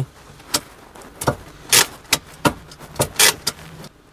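Car handbrake lever ratchet clicking: a run of about a dozen sharp clicks, unevenly spaced, as the lever is worked to check how many notches it travels.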